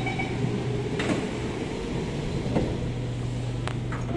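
Steady low hum of an SMRT C751B train standing at the platform, with a few sharp knocks about a second in, midway and near the end. A steady tone stops just after the start.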